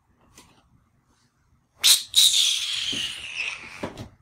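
A long steups: air sucked in through the teeth, starting sharply about two seconds in, then a hissing suck of a second and a half with a whistle-like pitch that falls. It is the Trinidadian sound of annoyance, disgust or disagreement.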